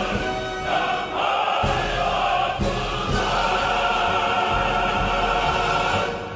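A choir singing with music, the sung line "최후의 승리를 향하여 앞으로" ("forward to the final victory").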